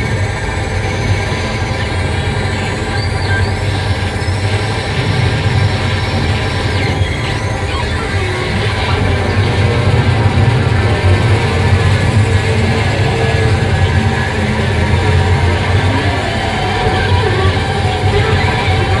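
Loud live noise music through a festival PA: a dense wall of electronic noise and amplifier drone, with many held tones over a heavy low rumble and no drum beat. It swells a little about halfway through.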